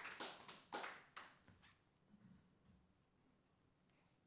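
A small audience clapping, the claps dying away within the first second and a half, then near silence: room tone.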